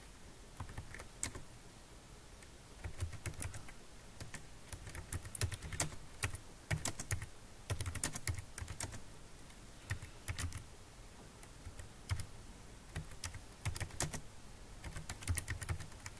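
Computer keyboard being typed on in irregular runs of keystrokes, with short pauses between words and phrases.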